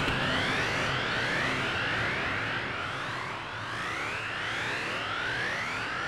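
Electronic music: a series of rising synthesizer sweeps, each lasting a second or two, over a hissy wash, with no clear beat.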